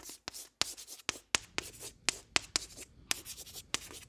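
Writing sound effect: a quick, irregular run of short scratchy strokes, about four or five a second, with brief gaps between them.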